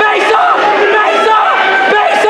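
Crowd of spectators yelling and shouting over one another, many voices at once.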